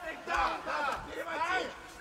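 Arena crowd shouting and yelling, with several voices rising and falling.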